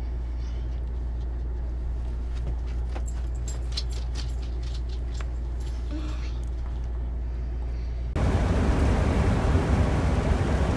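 A steady low hum with a few faint clicks, then, about eight seconds in, it cuts suddenly to the louder, even rush of road noise from inside a vehicle driving on a highway.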